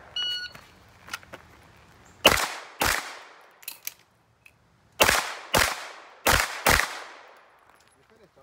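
A shot timer's start beep, then a 9mm Smith & Wesson M&P9L pistol fires six shots in three pairs, the two shots of each pair about half a second apart, each shot trailing off in echo.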